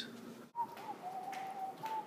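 A person whistling a few faint notes: a thin, pure tone that steps down, back up, and down again in pitch.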